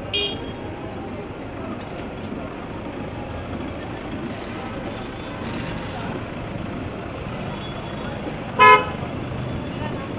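A car horn gives one short, loud toot near the end, over steady street and traffic noise. A briefer, fainter toot sounds at the very start.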